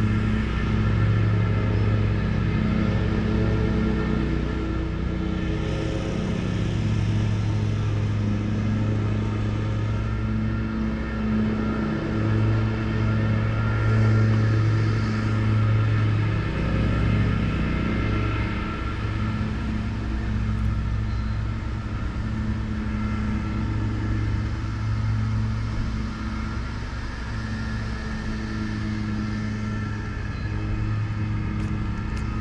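Lawn mower's small petrol engine running steadily, its level swelling and easing as it moves.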